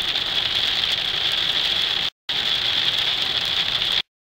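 Heavy rain on the windshield and roof of a moving truck, with road and engine noise, heard from inside the cab as a loud, steady hiss. It drops out for a moment about two seconds in and cuts off abruptly at the end.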